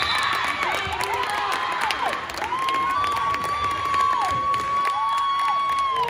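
Girls' volleyball players and supporters cheering a won point, with long, high, drawn-out calls, several of them falling in pitch at the end; the longest is held for nearly two seconds in the middle.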